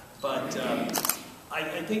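A still camera's shutter firing once about a second in, a quick double click, with a man's voice around it and speech starting near the end.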